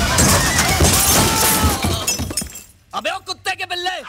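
A loud crash with breaking and clattering as a motorcycle rides into a pallet of stacked sacks and cartons, lasting about two and a half seconds. A voice speaks after it, near the end.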